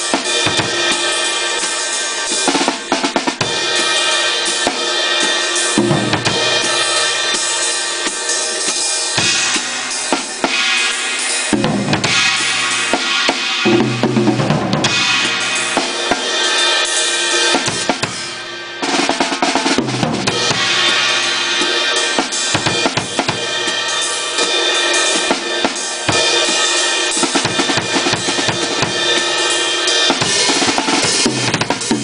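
A drum kit played continuously with sticks, with snare hits and ringing cymbals, as the drummer works out a rhythm. There is only a momentary break partway through.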